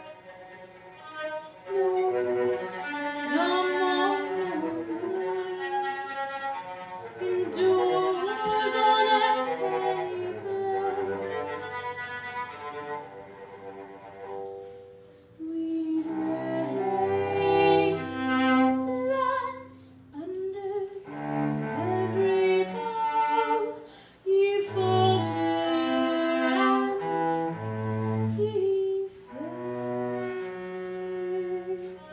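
Solo cello bowed in a melodic instrumental passage, with sustained low notes and two short breaks, one about halfway through and one a little later.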